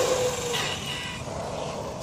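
A distant electric RC car running on asphalt: a motor whine that falls in pitch and fades about half a second in, then a brief faint high whine over a steady hiss of tyre and wind noise.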